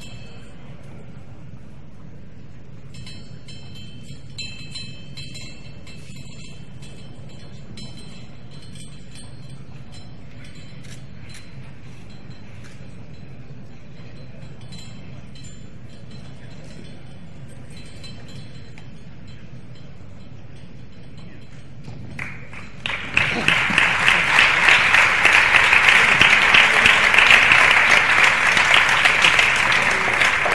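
A faint murmur in a large hall with a few thin, high ringing tones, then an audience bursts into loud applause about two-thirds of the way through and keeps clapping.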